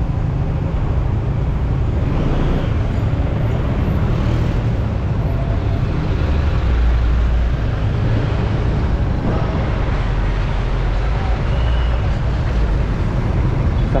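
Steady low rumble of wind buffeting the microphone, mixed with engine and traffic noise from a motorcycle riding slowly through town traffic.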